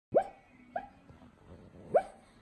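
A sleeping Cavapoo giving short, sharp yips in a bad dream, three in about two seconds, each quickly rising in pitch.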